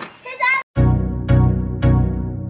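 A brief spoken word, then a sudden cut to background music with a steady, heavy beat, about two beats a second.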